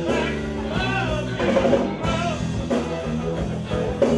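Live blues-rock band playing, with a male singer at the microphone over guitar and a steady beat.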